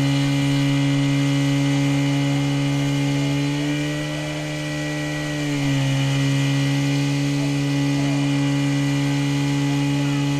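Portable fire pump engine running steadily at high revs. Its pitch rises slightly about three and a half seconds in and dips back just before six seconds, as the load on the pump changes while the hoses fill and water is sprayed.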